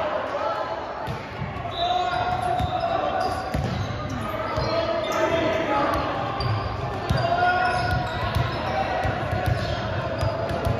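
Many voices of players and spectators echoing in a large gym, with a ball bouncing on the hardwood floor now and then.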